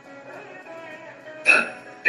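Faint melodic music, then about a second and a half in a voice calls out the rhythmic dance syllable "tee" loudly, the first of a recited string of dance syllables.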